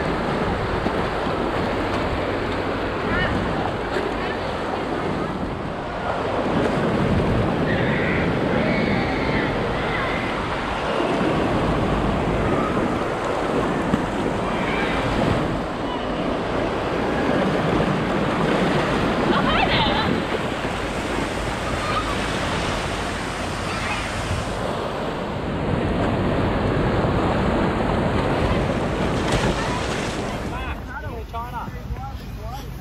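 Shallow-water surf breaking and whitewash rushing around the microphone, a steady hiss of water that swells and eases as each wave comes through every several seconds.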